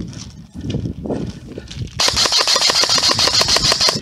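Footsteps through long grass, then about halfway through an Amoeba AM-014 Honey Badger airsoft electric rifle fires a full-auto burst of about two seconds: a rapid rattle of roughly fifteen shots a second that cuts off suddenly.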